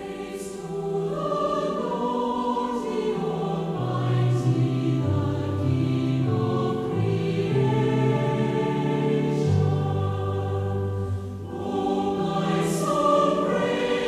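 A choir singing a slow closing hymn in sustained chords over a bass line that steps from note to note. It starts abruptly out of near silence.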